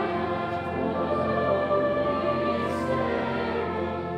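A congregation singing a Christmas carol in unison, accompanied by a brass band, with sustained held notes.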